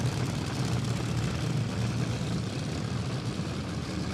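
Fuel-injected nitro A/Fuel dragster engine idling, a steady low rumble.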